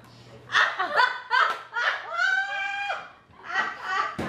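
People laughing in short bursts, with one long drawn-out vocal cry about two seconds in, a reaction to the taste of a foul-tasting jelly bean.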